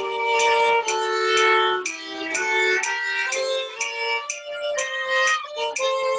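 Two bowed violin-family instruments playing a waltz duet together at a straight, steady tempo, with sustained notes changing about every half second.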